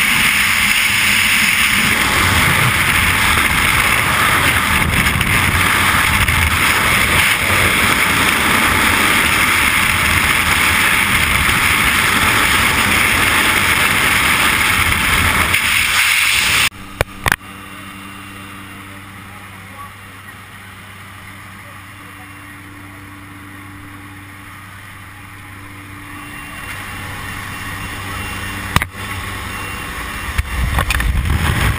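Freefall wind rushing loudly over a skydiver's helmet-mounted camera microphone. About 17 seconds in it cuts off abruptly, giving way to a much quieter steady low hum that builds again near the end, with a couple of sharp clicks.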